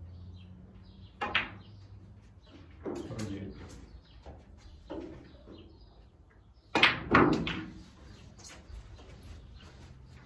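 Snooker balls clacking on a full-size table: a pair of sharp clicks a little over a second in as the cue ball strikes and pots a red, and the loudest pair about seven seconds in as the black is struck and potted. Fainter knocks come between them.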